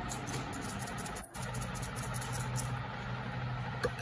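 A steady low mechanical hum, like a small motor or fan running, with a very brief dropout a little over a second in.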